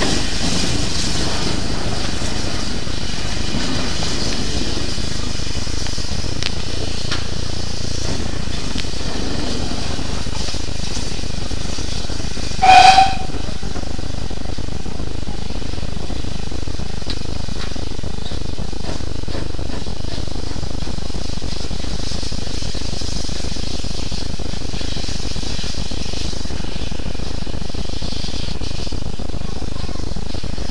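Steady hiss with one short toot of a steam locomotive whistle about halfway through, from an ex-GWR tank engine pulling away.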